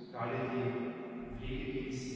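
A man's voice chanting a prayer on a nearly steady pitch, with a short break just after the start.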